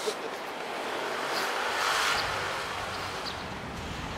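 Street traffic: a motor vehicle passing close by, its noise swelling to a peak about two seconds in and then fading, over a low engine hum.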